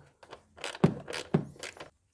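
A few sharp, irregular metallic clicks and scrapes in about a second and a half: a ratchet with an 8 mm socket working the bolt of the intake's manifold absolute pressure sensor.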